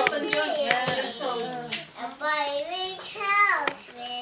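A young girl singing, with several long held notes, and a few sharp claps among them.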